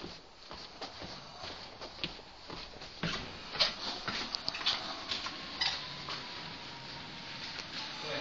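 Electric scooter being ridden: irregular clicks and rattles, with a faint motor whine that slowly falls in pitch from about halfway through.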